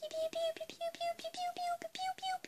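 A tune of short, even notes in quick succession, climbing slowly in pitch.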